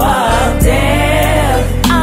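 Gospel choir singing over a band, with a steady bass and a couple of drum hits.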